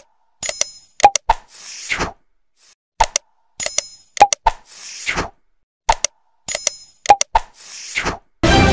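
Animated like-and-subscribe end-card sound effects: a bell-like ding, two mouse-style clicks and a short whoosh, repeated three times about every three seconds.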